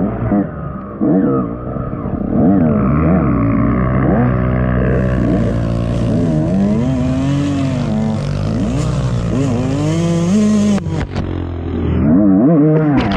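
Dirt bike engine heard from the rider's helmet, revving up and falling back over and over as the throttle is worked on a trail. There is a hiss through the middle, and a few sharp knocks just before the end.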